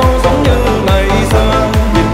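Vinahouse remix, a Vietnamese club style of electronic dance music: a steady, fast kick-drum beat, each hit a deep bass tone dropping in pitch, under a sustained synth melody.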